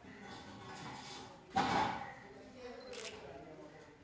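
Indistinct voices, with a loud short noise about a second and a half in and a sharp click near the end.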